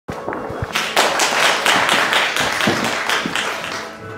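Audience applauding, with many quick claps that swell about a second in and die down near the end.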